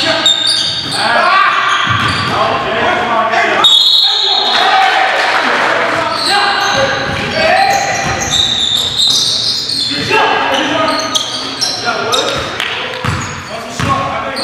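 Live sound of an indoor basketball game: a basketball bouncing on the hardwood floor and sneakers squeaking as players move, echoing in a large gymnasium, under players' voices.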